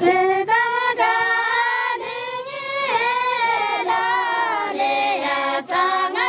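A group of women singing together in unison, a traditional wedding song in long held, wavering notes, with a short break near the end.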